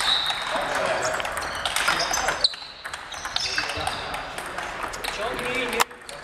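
Table tennis balls clicking off bats and tables, several rallies going at once, over a background murmur of voices.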